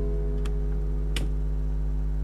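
An acoustic guitar's final strummed chord ringing out over a steady low hum, with two small clicks, one about half a second in and one just after a second in.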